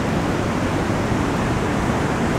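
Rough sea surf breaking on a rocky shore, an even, steady rush of waves, the sea heaved up by a typhoon swell.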